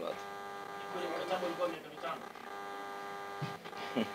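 Steady electrical mains hum made of several even tones from the microphone and sound system, with faint voices in the room about a second in.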